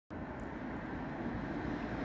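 Steady low outdoor background rumble, with no distinct events.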